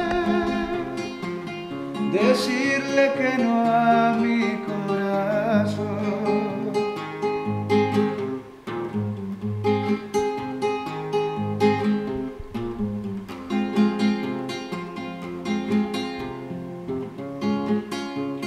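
Nylon-string classical guitar played fingerstyle, plucked notes and chords in a steady accompaniment. A man's voice sings a long, wavering note over it in the first few seconds, after which the guitar plays on alone.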